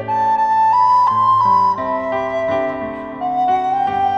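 A recorder plays a slow melody over piano accompaniment. The melody steps up to a high held note in the first second and a half, then drops to lower sustained notes.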